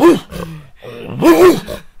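A man imitating a dog's bark with his hand cupped at his mouth: two loud barks, a short one at the start and a longer, arched one about a second in.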